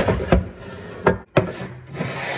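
Caraway pans being slid into a wooden cabinet and a pan organizer rack, scraping along the wood with several sharp knocks.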